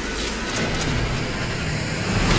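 Sci-fi film trailer sound design: a dense, steady rush of noise over a deep rumble, in the manner of a fast flight or fly-by effect.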